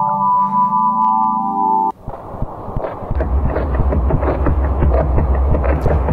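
Space-sound sonification clips presented as NASA recordings. First the 'supernova' sound: steady high electronic tones over a lower tone that slowly rises, cutting off suddenly about two seconds in. Then the 'quasar' sound: a dense crackling noise, with a deep rumble setting in about a second later.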